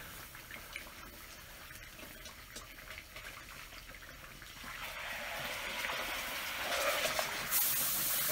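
Pork butt sizzling in the hot juices of a cast iron Dutch oven as it is flipped onto its fatty side. The sizzle is faint at first, swells from about halfway through and is loudest near the end.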